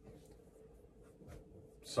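A pause in a man's speech filled with faint scratchy rustles and a few small clicks. The man starts speaking again right at the end.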